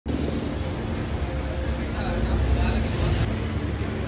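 Street ambience: a steady low rumble of road traffic with indistinct voices of people nearby.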